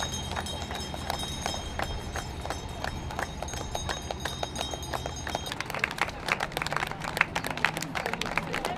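Scattered hand clapping from a loose crowd of people outdoors, over a steady low hum. The hum drops away about five and a half seconds in, and the clapping gets denser and louder toward the end.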